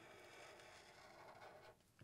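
A marker tip drawing faintly across paper, stopping shortly before the end.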